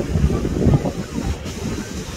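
Wind buffeting the microphone in a rough low rumble, over surf breaking on rocks below.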